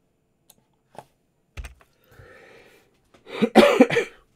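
A man coughs into his hand, a short loud cough near the end, after a few faint clicks and a soft knock.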